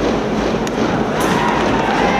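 Ballpark crowd noise with cheering-section band music, and a couple of sharp pops a little over halfway through, in time with a pitch reaching the catcher's mitt.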